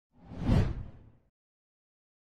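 A single whoosh sound effect for an animated title graphic, swelling up and dying away within about a second, with a deep low end.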